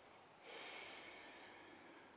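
Faint breath through the nose, a soft hiss that starts about half a second in and fades, paced with a slow seated yoga leg stretch.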